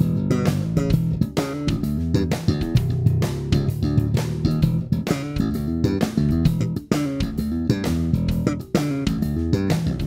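Human Base Roxy B5 five-string electric bass played slap style, a busy groove of sharp thumb slaps and popped notes, with its single pickup in passive mode and the coils wired in parallel.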